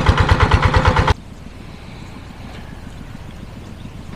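Small engine driving an irrigation water pump, running slowly with a steady putter of about ten beats a second. It stops abruptly about a second in, leaving only a faint background hiss.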